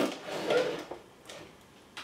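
Soft tabletop handling sounds while slime is being mixed: a click at the start, a brief rustle, another click just under a second in, then near quiet.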